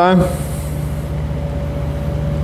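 Electric floor drum fan running with a steady low hum and an even pulse.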